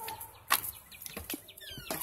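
An exterior door being opened: a sharp latch click about half a second in, then a few lighter knocks of handling. Near the end comes a short falling chirp.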